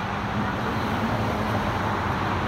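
Passing road traffic: steady tyre and engine noise from cars and a pickup truck driving by. It reads about 74 dB on a roadside sound-level meter.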